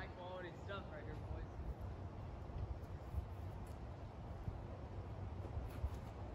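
Wind buffeting the microphone as a steady low rumble, with a short voice calling out in the first second and a faint click near the end.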